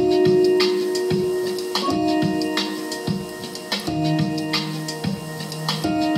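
Live electronic music: sustained synth chords that change about every two seconds over a steady beat, with percussive hits about twice a second.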